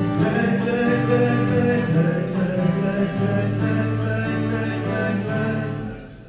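Acoustic guitar playing with a man singing along, some notes held long.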